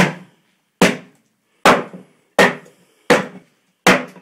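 Axe splitting a firewood round held inside a tyre: six sharp strikes of the blade into the wood in quick, even succession, about three quarters of a second apart.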